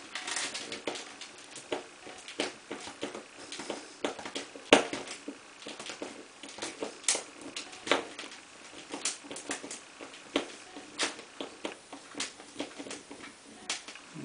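Irregular small clicks and taps of short stainless pan-head screws being backed out of a plastic pipe strap on a PVC pipe and fan assembly, with the plastic parts being handled.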